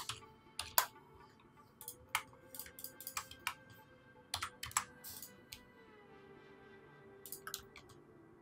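Irregular clicks from a computer keyboard and mouse being worked, coming in small clusters with a gap of about a second and a half near the end.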